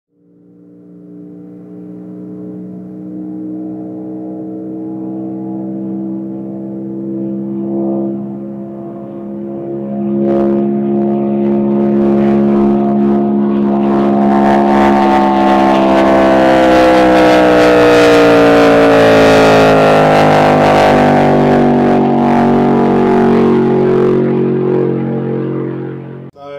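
Supercharged V8 engine of a land-speed racing car under hard acceleration. The engine note climbs slowly in pitch and grows louder through the run, then cuts off abruptly at the end.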